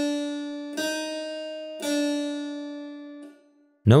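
Harpsichord playing three single notes in turn, stepping up a semitone and back down. Each note is plucked and bright, then dies away. The notes are tuned in quarter-comma meantone, demonstrating its unequal semitones.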